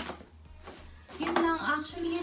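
A sharp click, then faint rustling of plastic packaging and a cardboard box being handled; a woman's voice comes in a little after a second in.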